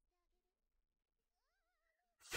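Near silence, with only very faint wavering tones.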